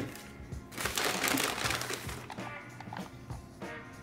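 A brown paper bag rustling and crinkling for about a second and a half as a hand reaches into it, over quiet background music.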